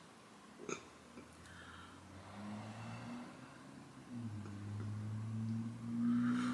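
A short sip of very hot tea from a mug, then a low, steady closed-mouth 'mmm' hum from the drinker that grows louder about four seconds in.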